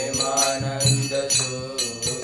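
Devotional kirtan: voices chanting a mantra to a melody over a steady beat of hand cymbals, about three or four metallic strikes a second, and a low drum.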